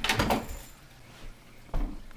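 A short noisy clatter that dies away within the first half second, then a few dull thumps near the end.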